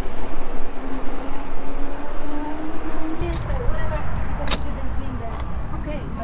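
Riding an e-bike: wind rumbling on a body-worn action camera's microphone, heavier from about three seconds in, over a steady whine that climbs slightly just before that. Two sharp clicks come in the second half.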